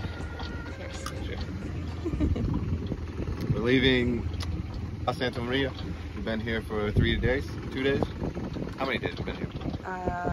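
Indistinct talking in short bursts over a steady low rumble of wind and boat noise on a sailboat at sea.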